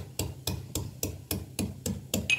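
Metal pestle pounding fresh ginger in a metal mortar: a steady run of sharp knocks, about three a second.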